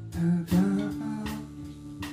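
Live band music: a man's voice sings held notes through the first second and a half over strummed acoustic guitar and electric bass guitar.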